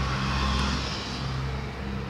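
Steady low mechanical hum with a faint hiss.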